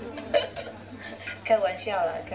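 A few sharp, light clicks or clinks of small hard objects, spaced apart, followed by a brief voice near the end.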